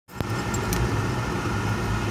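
Steady engine and road noise heard from inside a moving car's cabin, with a single click right at the start.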